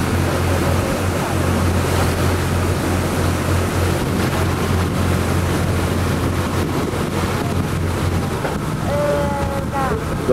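Boat engine running with a steady low hum under the rush of water and wind on the microphone. The engine hum drops away about eight and a half seconds in.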